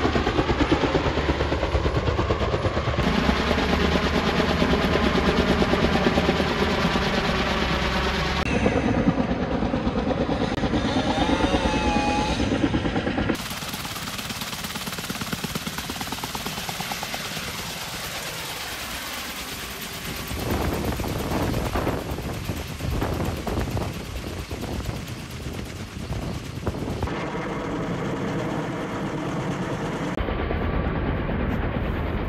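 Kaman K-MAX K-1200 helicopter with intermeshing, counter-rotating twin rotors, its blades beating in a fast, continuous chop over the turbine. The level shifts abruptly louder and softer a few times.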